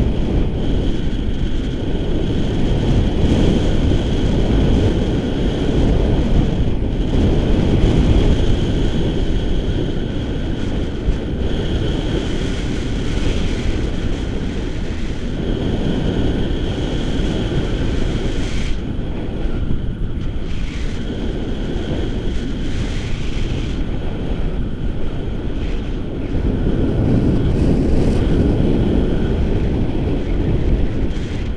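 Wind buffeting the microphone of a selfie-stick camera in tandem paraglider flight: a loud, steady low rush of airflow that swells and eases every few seconds.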